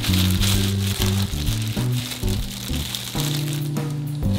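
Background music, with low notes changing every half second or so.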